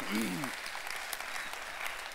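Congregation applauding, a steady patter of many hands clapping, with one short voice rising and falling at the start.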